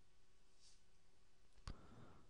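Near silence: room tone, with a single short click about one and a half seconds in.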